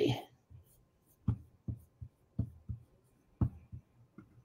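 A run of about eight short clicks and taps, about three a second, from a computer's keys and mouse being worked.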